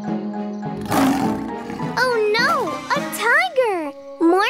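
A cartoon big-cat roar about a second in, followed by swooping, sing-song voice sounds rising and falling in pitch, over children's cartoon background music.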